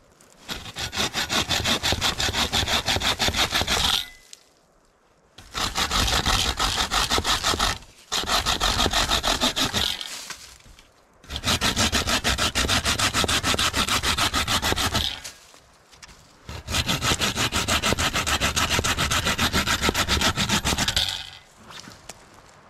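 Wooden-framed bucksaw with a 21-inch Bahco dry-wood blade cutting through small fallen branches in quick back-and-forth strokes. Five runs of rapid sawing, each a few seconds long, are broken by short pauses; the cut goes fast.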